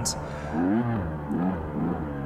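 Dirt bike engine revving up and down under way, its pitch rising and falling twice.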